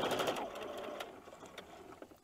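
Domestic electric sewing machine stitching with a rapid run of needle strokes, slowing and stopping about a second in, followed by a few faint clicks.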